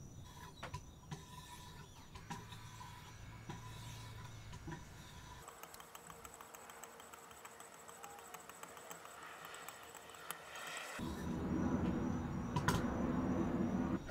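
A few faint clicks as sharpening stones are handled and swapped on a Wicked Edge guided knife sharpener. Then, for the last three seconds or so, a steady scraping as the 2200-grit stones are stroked along the steel edge of a USMC KA-BAR knife.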